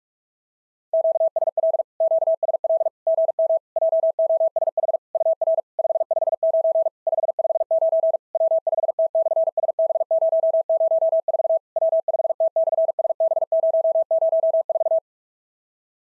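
Morse code (CW) sent at 45 words per minute: a single steady mid-pitched tone keyed in rapid dits and dahs, starting about a second in and stopping about a second before the end. It is the Morse sending of the next summit-to-summit exchange, a greeting with a 559 signal report and the summit reference.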